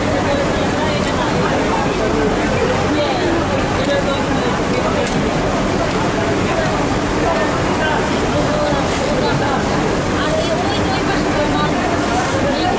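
Indistinct chatter of several voices over a loud, steady background noise of a busy workroom, with a few faint clicks of handling.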